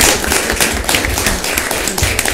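Audience applauding in a meeting room, dying down from full applause to scattered individual claps.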